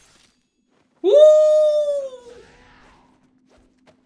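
A man's excited shout of "Woo!" about a second in, held for about a second and trailing off, with a faint steady hum beneath it.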